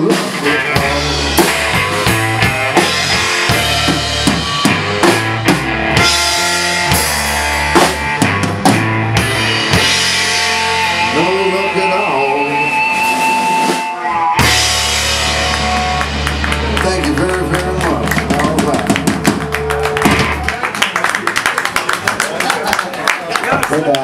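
A live blues-rock band plays an instrumental break with no vocals: a lead line with bending notes over bass guitar and a drum kit. About fourteen seconds in, the band stops for a brief moment, then comes back in. Near the end the bass drops out under a flurry of drum and cymbal strikes.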